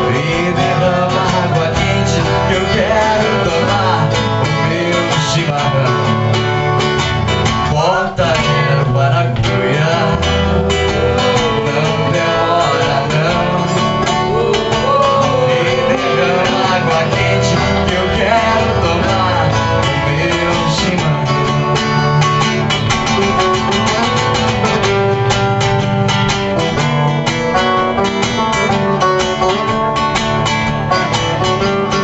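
Live acoustic music: two acoustic guitars playing a gaúcho folk song together, strummed and picked in a steady rhythm, with a brief break about eight seconds in.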